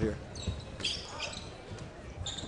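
Courtside basketball game sound: a few dull thumps of a ball bouncing on the court over a low arena murmur.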